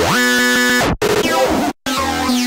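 Psychedelic trance music: a held synth chord with a pitch glide sweeping downward, cut off abruptly just before the one-second mark. It comes back briefly, then stops dead again for a moment near the end.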